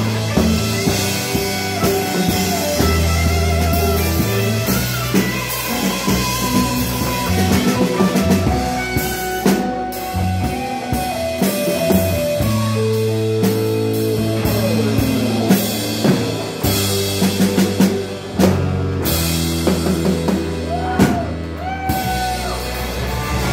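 Live band playing an instrumental passage: electric guitars, with a lead line of sliding, bent notes, over a five-string electric bass and a drum kit.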